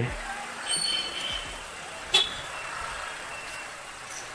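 Street traffic noise heard from a slow-moving motorcycle, with faint distant voices and a sharp click a little over two seconds in.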